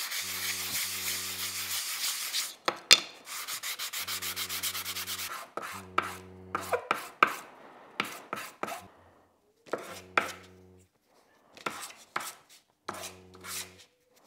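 Small hardwood blocks rubbed back and forth by hand on a flat sheet of sandpaper, sanding the pieces and rounding their corners: fast, even scratchy strokes for the first few seconds, then shorter runs of strokes. Light wooden knocks come in between, the loudest a sharp knock about three seconds in.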